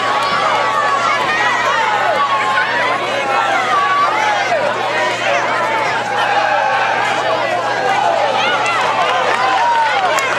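Football crowd and sideline players shouting and cheering during a play, many voices overlapping, over a steady low hum.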